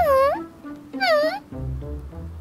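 Background music with two high-pitched, meow-like cartoon vocalizations, each dipping and then rising in pitch: one at the start and one about a second in.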